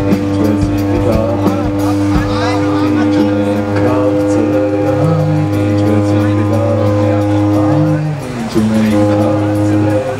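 Live rock band playing: electric guitars holding long distorted notes over bass, with drum hits in the first couple of seconds and a man's voice singing.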